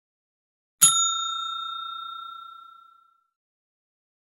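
A single bell ding sound effect, struck once about a second in and ringing out, fading over about two seconds. It is the notification-bell chime of a subscribe-button animation, marking the bell being clicked.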